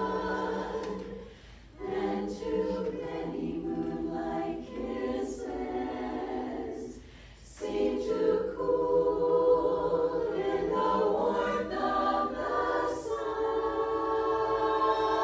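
Women's chorus singing a cappella in sustained chords, in phrases broken by two short breaths, about a second and a half in and again about seven seconds in.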